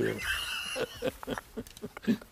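A man's voice makes a high, wavering non-speech sound for just under a second, followed by a few short, low vocal sounds.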